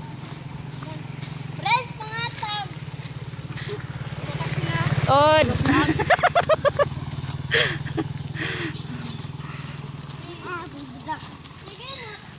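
Small motorcycle engine passing close, its hum building to loudest about five seconds in and then fading away.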